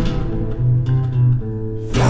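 Instrumental passage of a psychedelic rock song: sustained guitar and bass notes with the drums dropping away. The full band comes back in with a cymbal crash just before the end.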